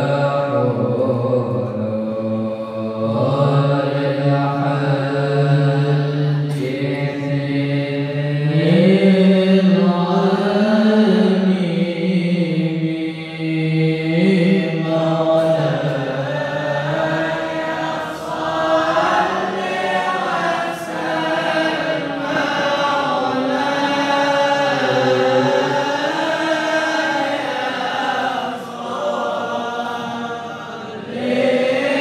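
Islamic devotional chanting (sholawat) in Arabic: voices sing long, drawn-out lines that rise and fall slowly in pitch.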